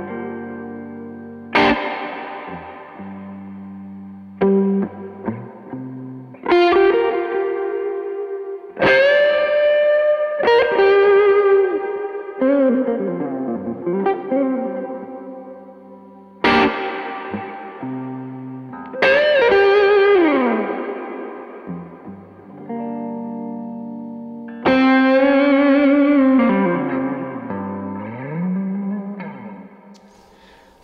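Electric guitar through effects pedals playing slow, sparse blues phrases, reacted to as haunting tones. The single notes are sharply picked, bent down and back up, and shaken with vibrato, and each phrase is left to ring and fade before the next begins.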